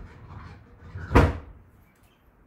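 A single sharp knock a little over a second in, the loudest thing here, with a fainter knock right at the start.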